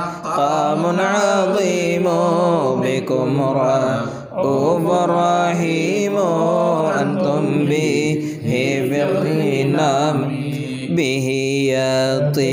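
Arabic devotional chanting of a Mawlid poem in praise of the Prophet Muhammad: a sung melodic line with ornamented, wavering pitch. There are brief pauses for breath about four and eight seconds in.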